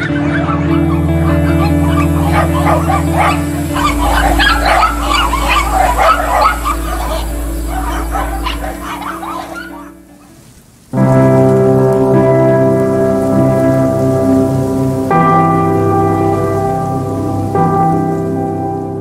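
Many dogs barking at once over background music with long held tones. The barking stops about ten seconds in, and after a brief dip the music carries on alone with sustained chords.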